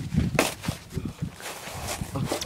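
Shuffling and crunching in snow, with a few short knocks from a plastic sled, as a person sits down on it.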